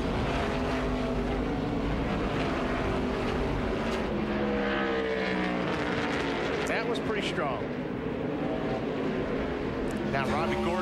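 NASCAR Cup stock cars' V8 engines at race pace as a pack of cars runs through the corners. Their engine notes glide up and down as the cars brake and accelerate.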